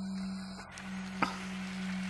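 Vehicle engine running with a steady low hum, heard from inside the slowly moving vehicle, with a single light click about a second in.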